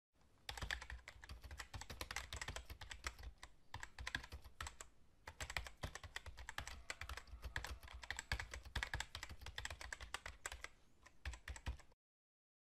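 Computer keyboard typing: a fast, steady run of key clicks with a few brief pauses, keeping time with title text typing itself out letter by letter.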